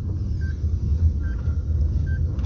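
Steady low rumble of a car heard from inside the cabin, with a short faint beep repeating at an even pace, a little more than once a second.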